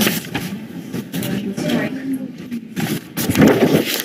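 Indistinct talk from people close to the microphones, with a louder noisy burst near the end.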